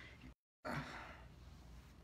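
Faint breathing, a man sighing out softly after the effort of dancing. The audio drops out completely for a moment about a third of a second in.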